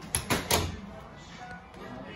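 An interior panelled door pushed shut: three quick clicks and knocks of the lever latch and door, the last the loudest with a dull thud as it closes.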